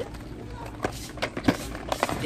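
Cardboard boxes being handled on a store shelf: a collection box pulled out against its neighbours, giving four or five sharp short knocks and rubs over a low store background.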